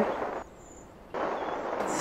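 Faint background hiss in a pause between sentences. It cuts out almost completely about half a second in and comes back abruptly a little after a second, as at an edit in the audio.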